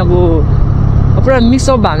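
Steady low rumble of a motorcycle riding at road speed, with wind on the microphone, under a voice that talks briefly at the start and again in the second half.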